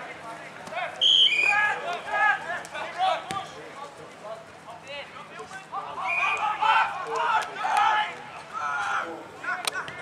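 Shouted calls from footballers and onlookers on an Australian rules football ground, with a sharp knock near the end.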